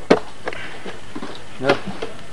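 A single sharp knock just after the start, followed by brief snatches of men's voices.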